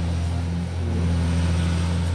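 A steady, low-pitched mechanical hum that holds unchanged throughout.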